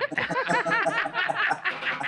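Several people laughing together in short, overlapping chuckles.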